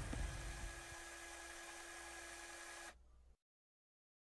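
Faint steady hiss of the recording's background noise, with a faint hum. It fades over the first second and then cuts off to dead silence about three seconds in.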